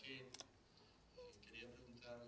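Near silence, just room tone, broken by a quick pair of sharp clicks about a third of a second in and a faint murmur of voices.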